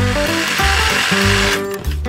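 Stihl HSA 56 battery hedge trimmer running, its motor and reciprocating blades making a steady buzz that stops about one and a half seconds in, over background music.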